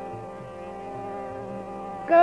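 Steady instrumental drone of many held tones filling a pause between sung phrases of a Hindustani vocal performance, with a few faint low thumps, from an old cassette recording.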